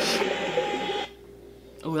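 Underwater rushing-water sound from a music video's opening, played back through speakers: a steady rushing noise that cuts off suddenly about a second in. A woman says "oh" near the end.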